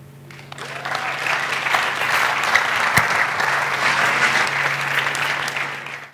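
Audience applauding, swelling over the first second and fading out near the end.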